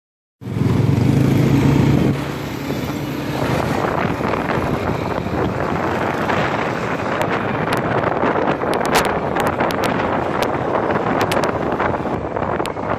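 A motorcycle riding along a street: its engine note is strong for the first two seconds, then gives way to steady road and wind rush. Scattered sharp clicks run through the second half.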